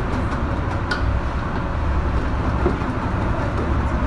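Wire whisk beating cream in a stainless steel bowl: a rapid metallic clatter and swish, over a steady low rumble.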